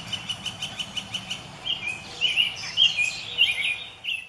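Birdsong: a fast run of evenly repeated high chirps for the first second or so, then a jumble of varied chirping notes.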